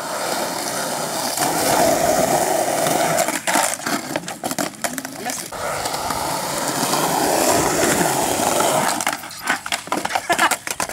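Skateboard wheels rolling on concrete, with several sharp clacks of the board around the middle and again near the end.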